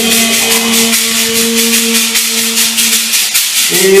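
Worship music: a hand shaker (maraca) keeps a steady rhythm of about four shakes a second under one long held sung note. A new sung phrase begins near the end.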